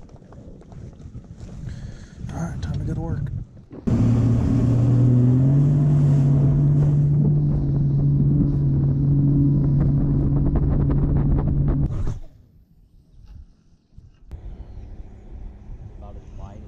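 Bass boat's outboard motor running at speed across open water, a loud steady drone with wind and water rush; it starts abruptly about four seconds in, rises a step in pitch soon after, and cuts off at about twelve seconds. Before it, a quieter stretch with a brief voice.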